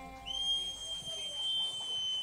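The last held note of the music dies away. About a quarter second in, a long, high whistle starts, glides up briefly and then holds steady on one pitch.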